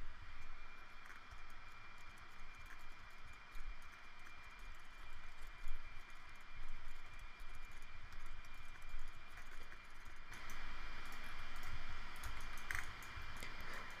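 Computer keyboard keys and mouse buttons clicking irregularly as Blender shortcuts are pressed, over a faint steady hiss with a thin high tone. The hiss grows louder about ten seconds in.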